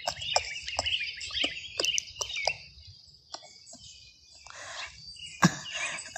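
Small birds chirping and twittering, busiest in the first two and a half seconds, over a string of short sharp clicks.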